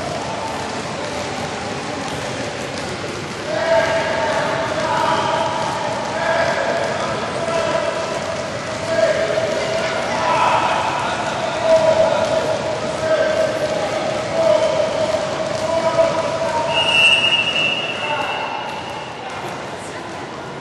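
Basketballs bouncing on a hard court, with voices in the background.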